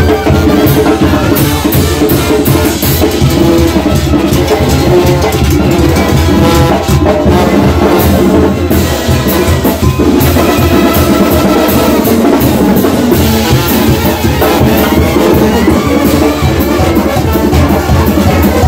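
Live Mexican banda playing loud dance music: sousaphones carrying the bass under trumpets, with congas, a gourd scraper and crash cymbals keeping a steady beat.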